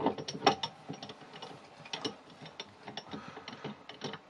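Metal parts at the end of a wood lathe's headstock spindle being turned and fitted by hand: a run of irregular metallic clicks and ticks, thickest in the first second.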